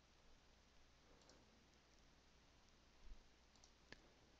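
Near silence, with faint computer mouse clicks: a short cluster about three seconds in and a single sharper click near the end.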